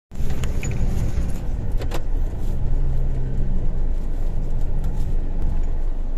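A 4x4's engine running at low speed, heard from inside the cab as it drives through a shallow, rocky river. The cabin rattles and clicks throughout, with a couple of sharp knocks about two seconds in.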